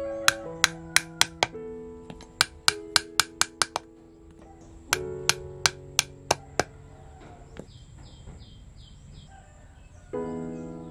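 Small hammer tapping thin nails into wooden strips, in quick runs of light blows about three a second with pauses between, over background music with held notes.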